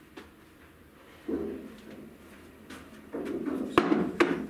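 Pool balls knocking and rolling inside the pool table's wooden ball-return, in two low muffled runs, with a sharp clack of ball on ball near the end.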